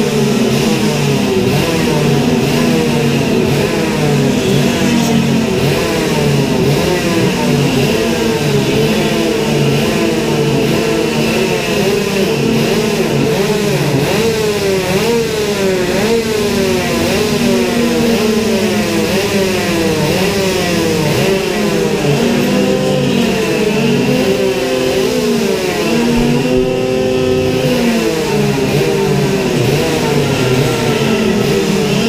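Several go-kart engines idling together at slightly different pitches, with repeated short revs rising and falling through the middle of the stretch.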